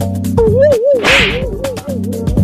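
Comic sound effects over background music with a steady beat: a warbling tone that wobbles up and down about five times a second, and a short swish about a second in.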